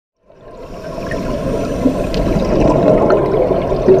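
Underwater sound of scuba divers' exhaust bubbles, a dense bubbling rush that fades in over the first second and holds steady, with small scattered clicks.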